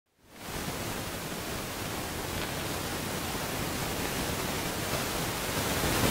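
Even hiss of static-like noise with no pitch or rhythm, fading in just after the start and slowly swelling louder.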